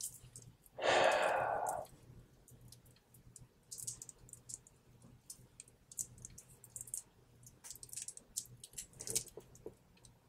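A person lets out a breathy sigh about a second in. After it come many faint, light clicks and crinkles as a stainless steel link watch bracelet, still partly wrapped in protective plastic film, is handled and turned in the fingers.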